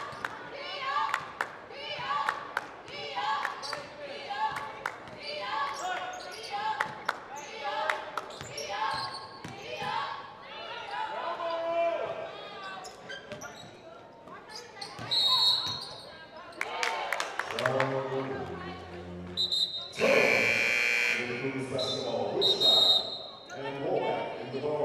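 Basketball game in a gym: a ball bouncing on the hardwood and voices through the first part. Near the end come short high whistle chirps and a loud blast as play stops.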